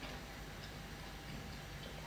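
Quiet chewing of food, with a few faint, irregular mouth clicks over a low steady room hum.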